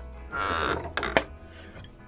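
Wood pieces handled on a workbench: a brief scrape, then two sharp knocks about a second in, over background music.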